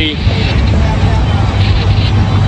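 Steady low rumble of wind buffeting an outdoor phone microphone, with no clear event standing out.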